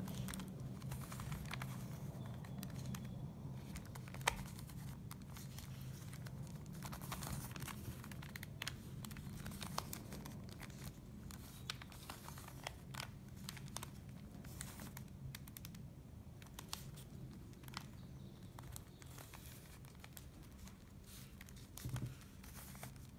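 A plastic Rubik's Cube being twisted by hand, its layers turning in quick succession with a string of soft clicks and clacks. One sharper click comes about four seconds in.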